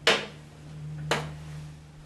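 A drinking glass set down on a glass tabletop: a sharp clink at the very start, then a second, quieter knock about a second later, over a low steady hum.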